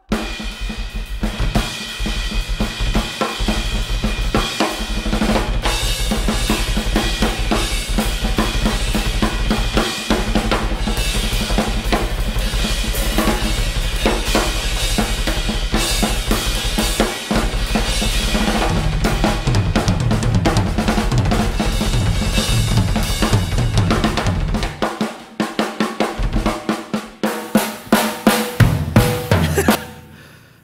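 Two drum kits played together in a rock song over a backing track, snare, bass drum and cymbals throughout. About five seconds before the end the low backing drops out and the drums play a run of separate hard accented hits that stop abruptly.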